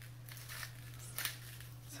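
Hand salt grinder being twisted, grinding coarse salt in several short crunchy bursts.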